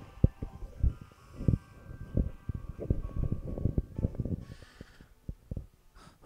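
Handling noise from a handheld microphone: a string of irregular soft low thumps and bumps as it is held and moved, with a faint steady tone in the background for the first few seconds.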